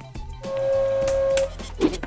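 An electronic sound effect with music: one steady, buzzy tone starts about half a second in and holds for about a second over a faint hiss, then cuts off.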